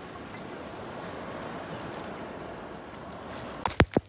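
Sea water sloshing and gurgling around a small boat, heard as a steady wash with wind on the microphone. A few sharp clicks near the end.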